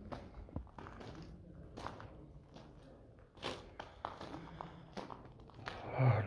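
Footsteps on the floor of a disused railway tunnel, an uneven step roughly every half second to a second.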